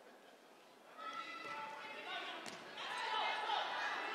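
Gym crowd voices and calls that start up about a second in after a near-silent moment, in a large echoing hall. A single sharp smack of a volleyball being hit comes about two and a half seconds in, consistent with the serve.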